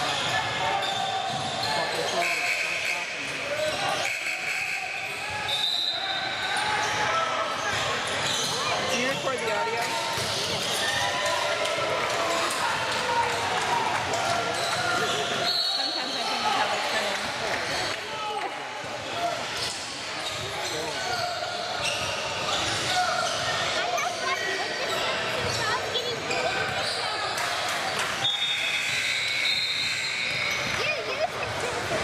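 Basketball being dribbled and bounced on a hardwood gym court, with brief high squeaks of sneakers and indistinct shouts and chatter from players and spectators, echoing in the large hall.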